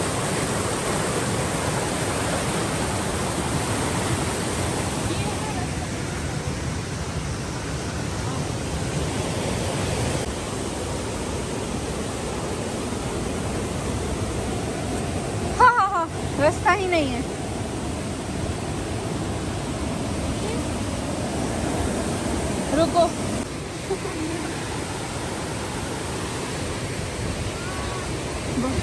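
Steady rush of a waterfall-fed mountain stream running over rocks, a little stronger in the first few seconds.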